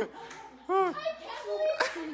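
Voices only: laughter and excited exclaiming, with a short high rising-and-falling voice sound just under a second in.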